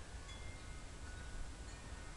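Faint wind chime tones, several thin ringing notes that overlap and fade, over a steady low rumble.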